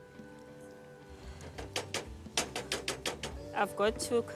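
A spoon knocking and scraping against a stainless steel pot while sliced liver is stirred: quiet at first, then a quick irregular run of clicks through the second half.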